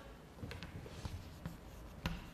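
Chalk writing on a blackboard: faint scratching with a few short, sharp taps of the chalk against the board.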